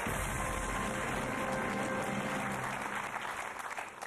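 Studio audience applauding over a game-show music cue, with both fading away near the end.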